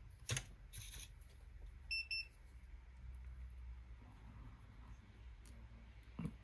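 Soldering station beeping twice in quick succession, two short high tones as the iron's tip temperature is turned down to 300 °C. A light click comes near the start, with faint room tone otherwise.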